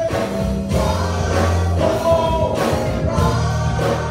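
Gospel praise team of two women and a man singing together with live band accompaniment, drums and bass under the voices.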